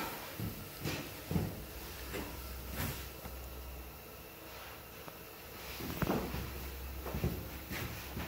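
Scattered light knocks and clicks over a low steady hum, with a quieter stretch in the middle.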